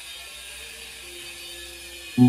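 Faint, steady background hum and hiss with no distinct events, and a faint steady tone coming in about a second in.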